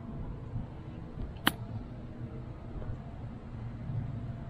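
A single crisp click of an iron striking an RZN distance golf ball on a short chip shot, about a second and a half in, over a faint low background rumble.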